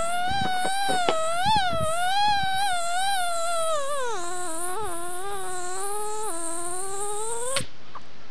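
Mosquito buzzing, a high whine that wavers up and down, drops lower about four seconds in and cuts off abruptly near the end.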